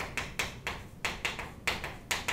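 Chalk writing on a chalkboard: a quick run of sharp taps, about four a second, as letters are chalked onto the board.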